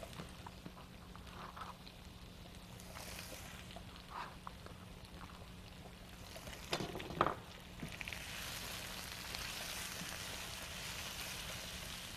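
Zucchini and onion frying in oil in a stainless steel skillet: a faint sizzle that grows louder and fuller about eight seconds in. A couple of brief knocks come shortly before that.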